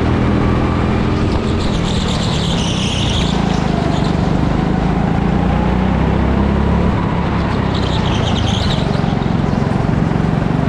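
Go-kart engine running hard at racing speed, heard from the driver's seat, with two brief high-pitched squeals about two to three seconds in and again about eight seconds in.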